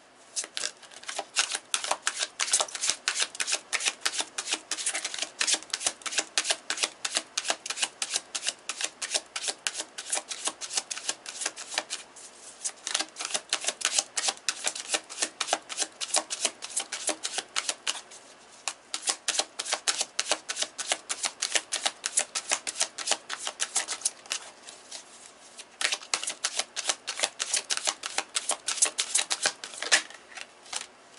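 A deck of tarot cards being shuffled by hand: a rapid run of crisp card clicks, with short pauses about 12, 18 and 25 seconds in.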